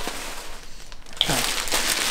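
Crinkling of a bag or its packaging as items are rummaged out of it, softer in the middle and louder again near the end.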